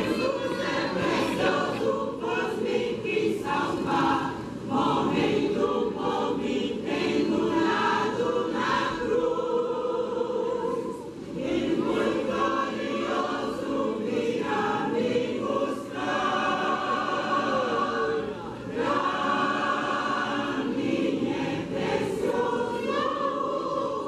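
Mixed choir of women's and men's voices singing a gospel hymn in Portuguese, in long phrases with short breaks between them.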